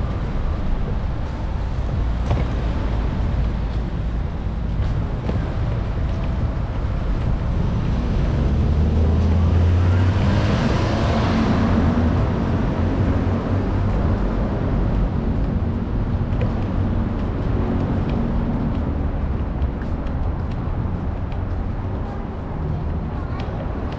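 Steady rumble of city road traffic, with one vehicle passing close about ten seconds in, its sound swelling and then fading.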